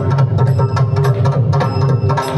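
Mridangam played in a fast, dense run of strokes, with a deep bass boom running under the quicker sharp strokes. A steady held tone sounds underneath.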